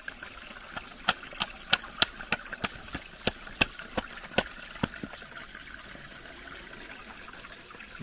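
Small pick hammer striking a clay and shale bank, about three sharp chipping strikes a second that stop about five seconds in, with a stream trickling behind.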